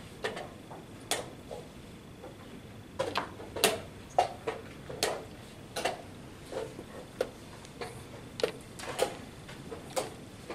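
Irregular sharp clicks and knocks of wooden chess pieces being set down and chess clock buttons being pressed around a busy tournament hall, a dozen or so taps scattered through, the loudest a little after three and five seconds in.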